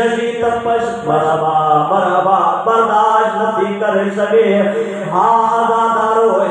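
A man chanting a mournful Muharram lament in long, drawn-out held notes that slide between pitches.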